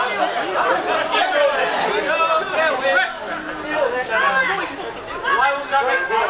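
Indistinct chatter of several voices talking over one another, spectators in the stand.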